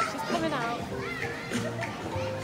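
Children's voices calling out, high and gliding in pitch, over background music.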